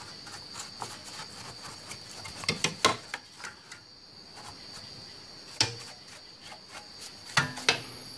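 A steady high-pitched tone runs under a scattering of light clicks and taps, the loudest a quick cluster about two and a half seconds in and another just past halfway.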